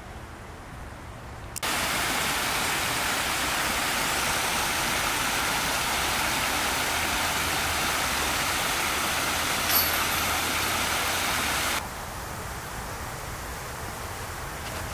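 Creek water rushing over a small limestone ledge, a steady noise that cuts in about a second and a half in and cuts off abruptly about two seconds before the end.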